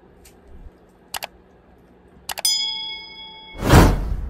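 Editing sound effects for an on-screen subscribe animation: two quick pairs of mouse clicks, then a bell ding that rings for about a second, cut off by a loud burst of noise near the end.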